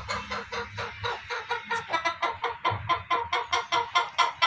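Broody hen sitting on eggs, clucking in a steady run of short, evenly spaced clucks, about five a second.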